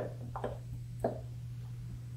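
Wooden spoon muddling strawberries at the bottom of a cup: three short knocks about half a second apart, over a steady low hum.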